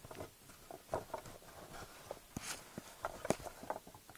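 Handling noise: scattered light clicks and knocks at irregular intervals, as a Nerf Recon blaster and its foam darts are handled.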